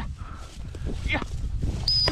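Low rumbling noise on the microphone with a few brief rustles, then a long, steady, high-pitched dog-training whistle blast starts right at the end.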